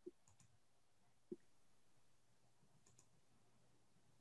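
Near silence with two faint clicks, one at the start and one just over a second in, and a faint tick near the end.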